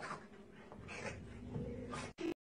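A small puppy scuffling as it jumps and paws at a larger dog: a few short, soft rustling bursts, one near the start and one about a second in.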